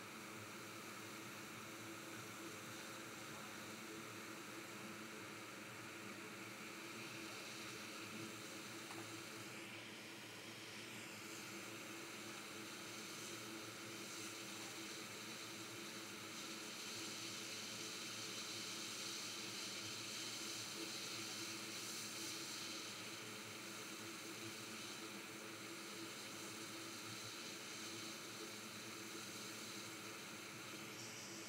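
Steady hiss of a hot air rework station blowing on a circuit board while a micro-BGA chip is heated to lift it off. The hiss grows a little louder a bit past halfway, then settles back.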